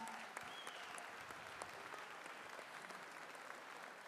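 Large audience applauding in a big hall: a steady spread of many hand claps that eases off slightly toward the end.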